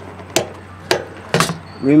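Rocker switch for an RV water heater's electric heating element being flipped, two sharp clicks about half a second apart, then another short knock near the end.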